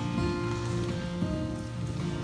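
Solo acoustic guitar accompaniment between sung lines: chords ringing on steadily, played softly.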